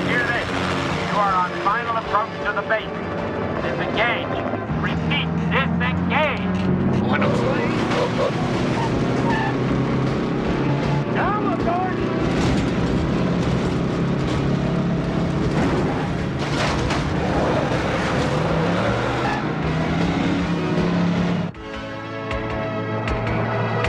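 Action-film chase soundtrack: a semi-truck's engine running hard with other vehicle noise, mixed with music. High wavering squeals come in the first few seconds.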